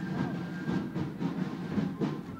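Colonial-style fife and drum corps playing a march: drums beating steadily under a high fife melody of held notes.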